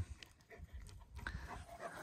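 A dog panting faintly, growing a little louder in the second half.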